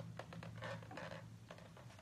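Faint scraping and a few light clicks of a white cardboard box being handled and opened, over a steady low hum.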